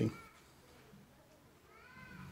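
Very quiet room tone with a faint, high call whose pitch rises and falls, heard briefly just after the start and again near the end.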